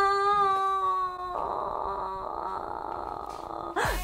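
A woman's long drawn-out wail of dismay, sliding slowly down in pitch, that turns after about a second into a quieter, breathy moan.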